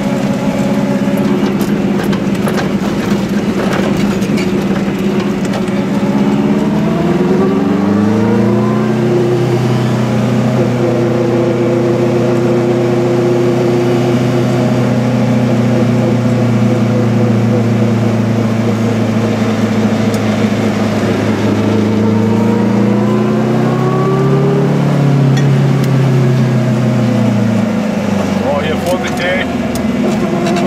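Goggomobil's small two-stroke engine pulling the car along, heard from inside the cabin: its pitch climbs as it speeds up, holds steady for a long stretch, climbs again, then falls away near the end.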